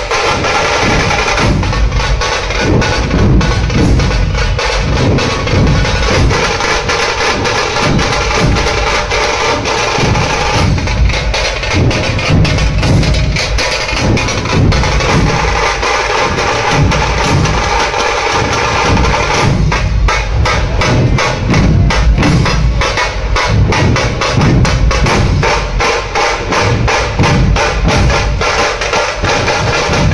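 Dhol-tasha ensemble: many dhol barrel drums played with sticks in a loud, fast, dense rhythm, with the sharp cracks of tasha drums over them.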